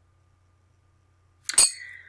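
One sharp clink with a short, fading ring about one and a half seconds in: small trinkets knocking against a cut-glass bowl as a hand digs into it.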